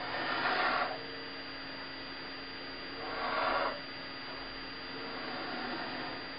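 Felt-tip marker drawn across paper in two long strokes, the second about three seconds after the first, over a steady low electrical hum.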